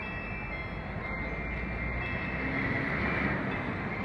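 Chimes ringing from a clock tower show, heard as thin sustained high tones over steady background noise that swells slightly near the end.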